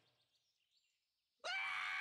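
Near silence, then about one and a half seconds in a cartoon sloth character starts a sudden, high-pitched scream held on one steady pitch.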